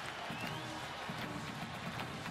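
Large stadium crowd noise: a steady din of many voices with no single event standing out.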